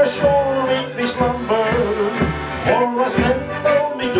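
Male shanty choir singing a sea shanty together, with accordion accompaniment and a steady beat about twice a second.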